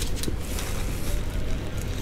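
Steady low background rumble with hiss, the room noise of a workshop, with one faint click about a quarter second in.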